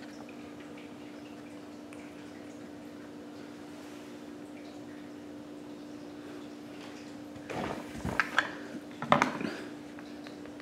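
Steady low hum over room noise, then a short cluster of small clicks and knocks about seven and a half to nine and a half seconds in.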